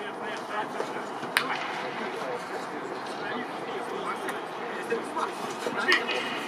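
Indistinct voices on an open football pitch over stadium ambience, with a single sharp knock about one and a half seconds in.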